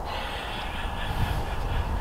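Steady low outdoor background rumble with no clear events, in a pause between speech.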